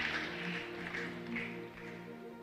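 Soft background music of held, sustained tones, playing quietly under a pause in the preaching.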